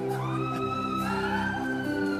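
Soft background music of held chords, with a higher line that slowly rises and then falls over them.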